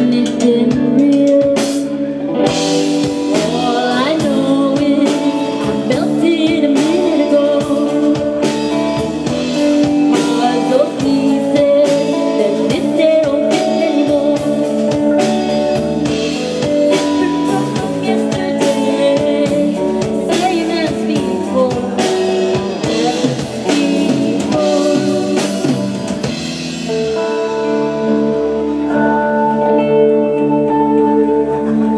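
Live rock band playing a passage without sung lyrics: electric guitars, bass guitar and drum kit, with a bending melodic line over the top. About 27 seconds in the drums stop, leaving held guitar chords ringing.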